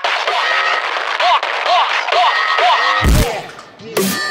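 Hard trap / dubstep beat in a breakdown. The kick and bass drop out, leaving a hissy texture with a run of short electronic chirps that bend up and back down, about three a second. About three seconds in comes one heavy bass hit, which fades away.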